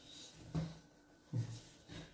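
Hands kneading a stiff cookie dough on a wooden tabletop: two soft, low thumps about a second apart as the dough is pressed down.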